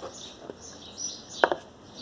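Small birds chirping repeatedly in the background, with one sharp knock about a second and a half in and a couple of lighter clicks before it.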